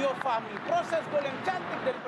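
Television match commentator's voice talking over the replay, with a steady haze of broadcast background noise underneath.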